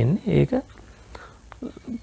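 A man's voice speaking into a lapel microphone, trailing off about half a second in, then a quiet pause with a few soft clicks, and a few brief words near the end.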